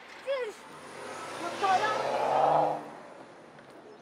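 A car passing close by outside, its sound swelling and then fading over about two seconds, heard from inside a parked car, with a short voice just before it.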